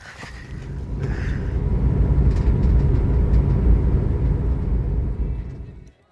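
Ski sliding over snow, picked up as a loud, steady rumble by an action camera mounted at the skier's foot; it builds over the first second or so and fades shortly before the end.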